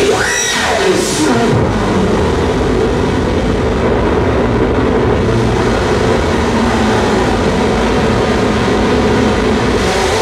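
Harsh noise electronics played live: a dense, loud wall of distorted noise. About half a second in, a sweep drops from high to low, then the noise holds steady with a thick low-mid drone.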